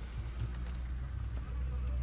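Low, steady rumble of a car heard from inside the cabin, with a few faint clicks about half a second in.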